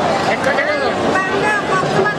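Close conversational speech, a woman talking, over the hubbub of a busy restaurant.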